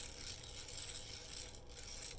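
Vintage red-handled hand-crank egg beater being turned, its gears and wire beaters whirring steadily.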